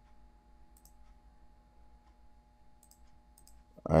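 A few faint computer mouse clicks, scattered through a quiet stretch, over a low steady hum.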